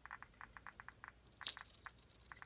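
Geiger counter clicking at an irregular, random rate of several counts a second, registering slightly above background from americium-241 smoke-detector sources held near its Geiger-Müller tube. About one and a half seconds in there is a brief, bright metallic clink.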